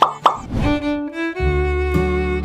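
Two quick plopping sound effects falling in pitch at the very start, then background music begins: sustained melodic notes from about half a second in, with a deep bass layer joining a little before halfway through.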